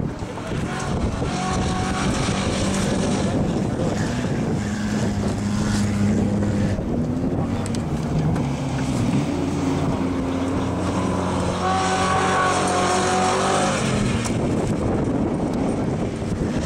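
Engine of an ex-police Police Interceptor sedan running hard around a dirt field track, its note rising and falling as it accelerates and lifts, with a stronger, higher-pitched run about three-quarters of the way through.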